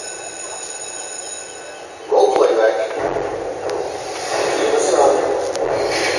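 Indistinct voices in a room, louder from about two seconds in, with faint steady high tones before that and a low rumble from about halfway.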